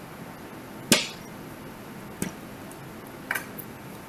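Three short, sharp clicks of a deck of tarot cards being handled in the hands, the first, about a second in, the loudest.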